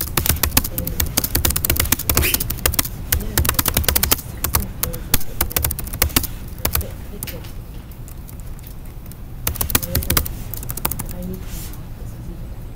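Laptop keyboard typing: quick runs of keystroke clicks, thick through the first four seconds, sparser in the middle, and another short flurry about ten seconds in.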